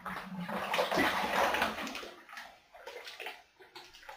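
Sugar syrup poured from a pan into an empty plastic fermenting bucket: a steady pouring splash for about two seconds that then breaks up into a few smaller dribbles and splashes.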